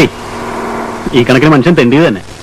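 A steady, even sound for about the first second, then a man speaks a short line of film dialogue.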